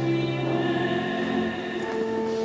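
A choir singing sustained chords, with the notes changing near the end.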